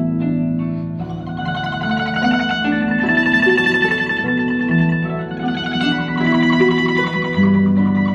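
Guzheng (Chinese zither) playing a slow melody: plucked notes that ring on over sustained lower bass notes.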